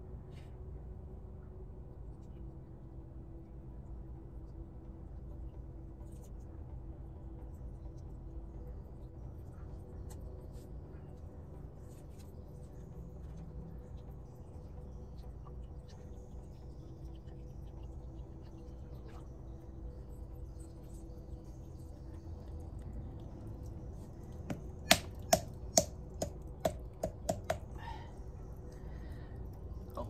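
A glass jar knocked in a quick run of about eight sharp taps, each with a short ring, the first ones loudest, about two-thirds of the way through, over a quiet steady background.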